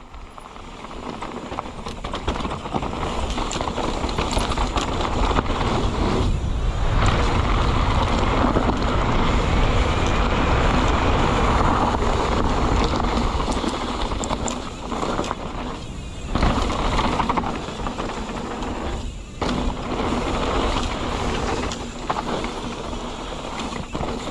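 Mountain bike riding fast down a dirt trail: tyres rumbling over loose dirt and stones, with wind rushing over the camera microphone. The noise builds over the first few seconds as speed picks up and drops out briefly a few times along the way.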